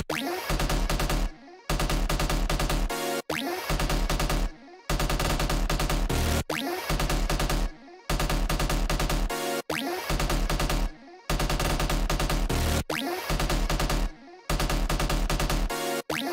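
Electronic music loop playing back from an FL Studio project: a dense, distorted pattern with a rapid stuttering bass, repeating about every 1.6 s with a short break before each repeat.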